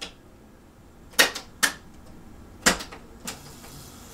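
Cassette deck transport keys on a boombox being pressed: three sharp mechanical clicks and a fainter fourth near the end.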